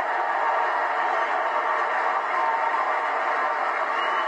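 Football stadium crowd cheering a goal, a steady even din.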